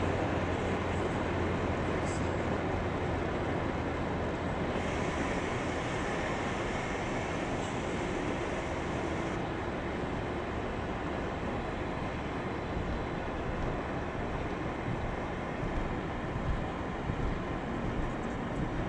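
Steady road and engine noise heard from inside a moving vehicle: a continuous rumble and tyre hiss, with a brighter hiss joining for a few seconds about five seconds in.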